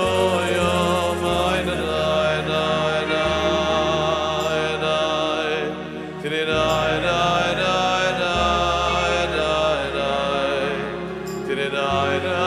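Live Jewish vocal music: a solo male singer with a male choir, singing long held notes over keyboard accompaniment. The bass note changes every couple of seconds, and the music dips briefly near the middle.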